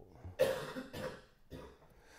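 A person coughing a few times in a row, the first cough the loudest.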